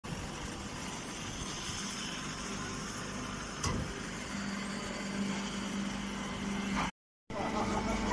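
Straw baling and shredding machinery running steadily, with a single knock a little before the middle and a steady low hum coming in about halfway. The sound drops out briefly near the end.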